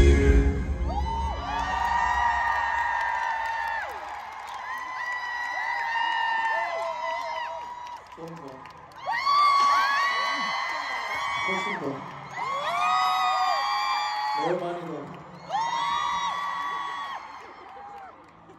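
Concert crowd cheering between songs: high-pitched voices of nearby fans calling out in long held shouts, in about five rounds of two to three seconds each, with a few lower voices in the gaps.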